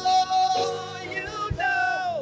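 A man sings a gospel song into a microphone: a long held note, then a run of wavering, ornamented notes, the last of which slides down in pitch at the end.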